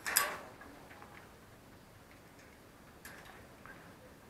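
Metal padlock and sliding bolt latch on a steel-barred dog cage door being handled. There is one sharp clatter just after the start, then a few faint clicks about a second in and again near the end.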